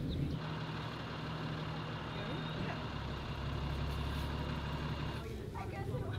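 An engine or motor running steadily, with a deeper rumble building about halfway through; it cuts off shortly before the end.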